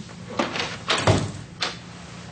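A door being shut: a few sharp knocks, with the loudest, heaviest thud about a second in.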